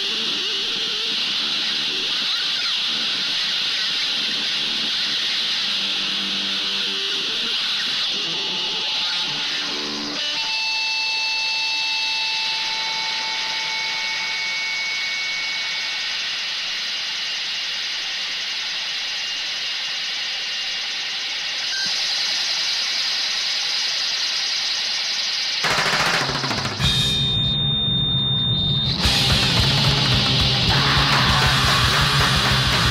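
Harsh, distorted noise intro with high squealing held tones through the middle; near the end the full punk band comes in with heavy distorted guitar, bass and drums, and the music gets louder.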